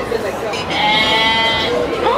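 A sheep bleating once: a single steady, held call about a second long.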